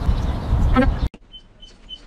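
Loud outdoor rumble of street noise with wind buffeting the microphone and a brief voice, which cuts off suddenly about a second in. After that the background is much quieter, with faint bites and chewing.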